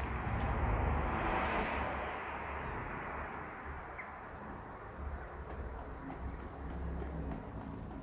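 Balloon whisk beating runny cake batter of crushed Oreo cookies and milk in a glass bowl, a steady wet churning and slapping. It is loudest in the first couple of seconds, then eases a little.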